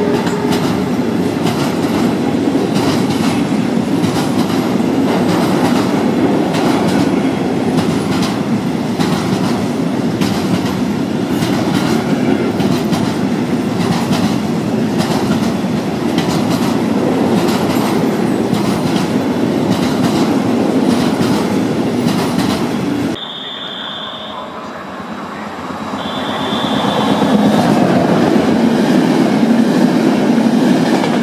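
Freight train of container wagons passing close by, a steady loud rumble with regular clicks of wheels over rail joints. About 23 seconds in it cuts to a quieter scene with two short high tones, then an electric-hauled passenger train grows louder as it approaches and passes.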